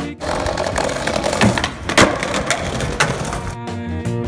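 Skateboard on stone paving: a steady hiss of hard wheels rolling, with several sharp knocks, the loudest about two seconds in.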